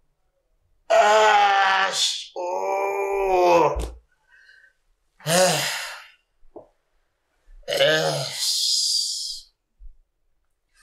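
A man groaning in pain: four long, drawn-out wordless groans with short pauses between them.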